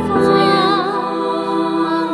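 Slow, tender song: a sung note held with vibrato over sustained accompaniment chords.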